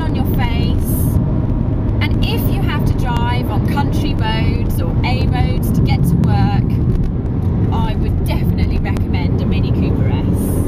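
Steady low rumble of engine and road noise inside the cabin of a Mini Cooper S (R53) driving at speed, with a woman's voice over it.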